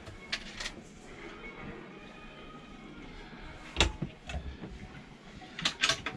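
Motorhome interior fittings being handled: a few sharp clicks, a louder knock about four seconds in, and a quick run of clicks near the end, like cupboard and window catches.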